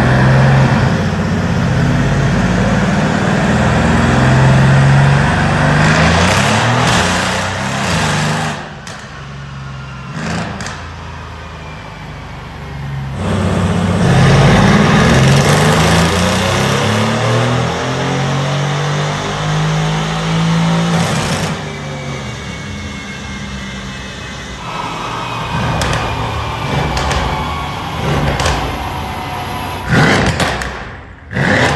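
Mercedes-AMG C63 S twin-turbo 4.0 V8, fitted with catless downpipes and a custom titanium exhaust, running loud on a chassis dyno, its pitch moving in steps as it is driven through the gears. It pulls hard twice, easing off about 9 s in and again about 21 s in.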